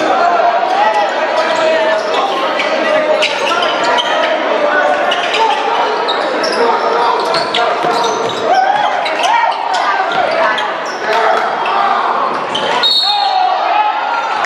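Basketball dribbled on a hardwood gym floor during play, with players' and spectators' voices echoing in the large hall. A short, high whistle sounds near the end.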